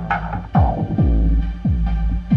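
Electronic beat playing back: deep kick drums that drop in pitch, about two a second, over steady held synth tones. A heavy sub-bass grows much louder under the kicks about half a second in.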